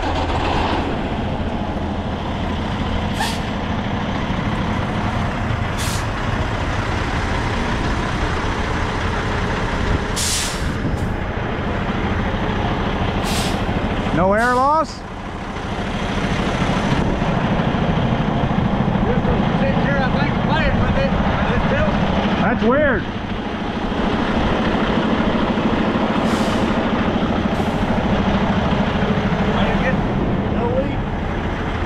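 Semi-truck diesel engine idling steadily while air is put to the trailer's brake lines, with several short air hisses. A quick rising whine comes about halfway through, and the level drops just after it.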